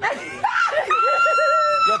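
A person's excited voice that breaks into a high-pitched scream about a second in, held on one steady note for about a second.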